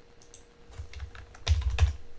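Typing on a computer keyboard: a few soft keystrokes, then a cluster of louder strokes about a second and a half in.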